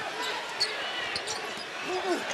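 Basketball arena ambience: a steady crowd murmur with a few faint squeaks and ticks of sneakers on the hardwood court during play.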